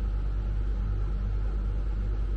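Caravan air conditioner running on cold, a steady low drone with a faint hum.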